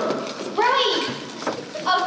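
Speech only: a young stage performer's voice delivering lines, with high, swooping intonation.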